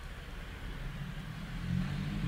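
A low engine hum that grows louder about a second and a half in.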